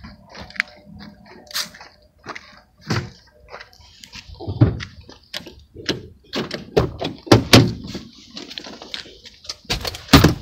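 A car door being opened and a person getting into the driver's seat: irregular clicks, knocks and rustles of handling and movement, ending in a heavy thump near the end.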